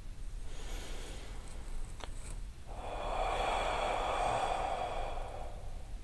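Ocean breath (ujjayi breathing): a soft breath in through the nose, then, from about three seconds in, a longer whispered "huhh" exhale through the mouth, made hissy by a slight contraction at the back of the throat.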